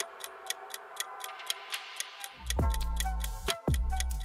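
Clock-ticking countdown sound effect, about four ticks a second, over background music; a heavy bass beat comes in a little past halfway.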